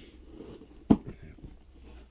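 Cardboard toy box being handled and turned over, with one sharp knock about a second in and faint scuffing of the cardboard around it.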